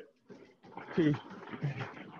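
Curved non-motorised TrueForm treadmills rolling under running feet as the runners build up speed: a low, steady rumble of the belt with footfalls in it.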